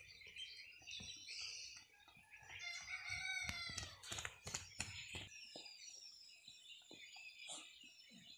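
Domestic fowl calling, with one long crow-like call falling in pitch from about two and a half to four and a half seconds in, among shorter calls. A few sharp taps follow near the fifth second.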